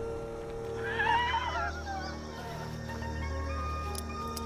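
A horse whinnying once, a wavering call that falls away at its end, about a second in, over soundtrack music with sustained notes.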